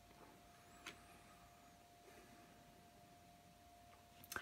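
Near silence: room tone with a faint steady hum and one soft click about a second in.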